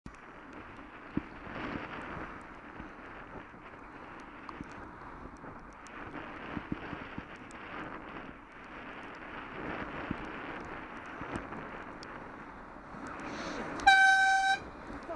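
Wind rushing over a bicycle-mounted camera's microphone, with tyre hiss on a wet road, while cycling. Near the end a coach overtakes close alongside, its noise swelling, and a loud horn blast begins right at the very end.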